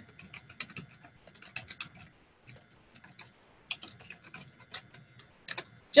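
Typing on a computer keyboard: quick, irregular runs of key clicks, with a short lull around the middle.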